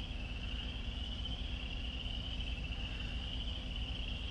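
Crickets chirping in a steady, continuous high trill, over a low steady hum.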